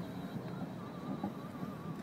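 Quiet outdoor background noise, with a faint wavering tone running through it from about half a second in.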